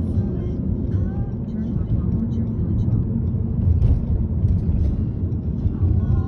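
Road noise inside a moving car: a steady low rumble of engine and tyres.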